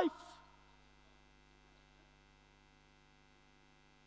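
Near silence with a faint steady electrical mains hum, after the last word of a man's speech and its hall reverberation fade out in the first half-second.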